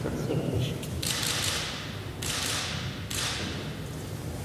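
Press cameras' shutters firing in rapid runs, three runs of about a second each, over dull thumps and a low murmur of voices in a large hall.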